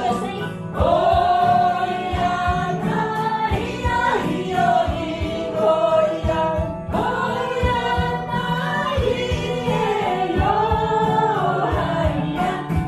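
Mixed choir of men and women singing a Christian worship song in rehearsal, a woman's lead voice amplified through a handheld microphone over the group, in long held notes.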